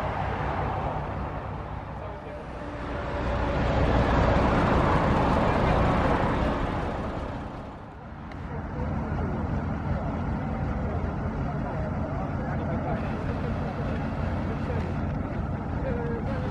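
Diesel engine of an Ikarus 280 articulated city bus, a Rába-MAN six-cylinder, swelling loud as the bus pulls away and drives near, then dropping back about halfway through to a steady idle close by.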